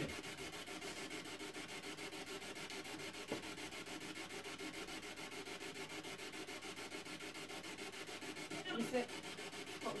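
A steady hiss of static with a fast, even flutter. There is a faint click about three seconds in and a faint short sound near the end.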